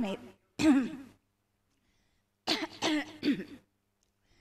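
A woman clearing her throat twice: once briefly about half a second in, and again for about a second near the middle. Her throat is bothering her.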